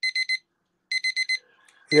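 Handheld digital electronic timer sounding its alarm at zero. It beeps in quick groups of four high beeps, one group about every second, marking the end of a timed interval.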